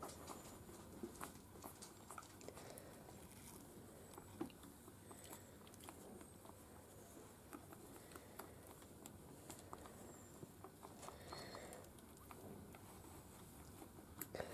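Near silence with faint, scattered soft clicks and smacks: a Miniature Schnauzer mother licking and cleaning her newborn puppies as they nurse.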